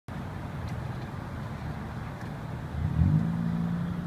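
Steady low road and engine rumble heard from inside a moving car. About three seconds in, a low engine note rises and then holds steady as the car speeds up.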